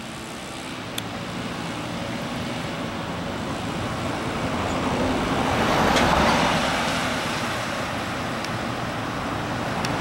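A motor vehicle passing on the road: tyre and engine noise builds to its loudest about six seconds in, then eases off.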